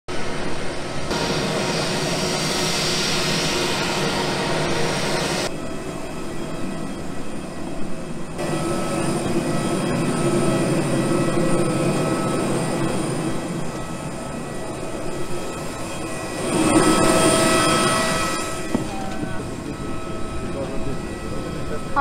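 Jet airliner noise: a steady rush with high, steady whining tones. The sound changes abruptly several times where the footage is cut.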